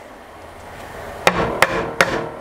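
Claw hammer striking protruding brad nails in wooden table boards, pounding them flush after they did not sink fully from the brad nailer. Three sharp blows in the second half, about three a second, each with a brief metallic ring.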